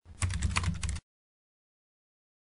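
Keyboard-typing sound effect: a quick run of about a dozen clicks lasting about a second, then cutting off suddenly.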